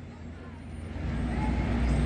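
Low engine rumble of a city bus in street traffic, growing steadily louder through the second half as it draws near.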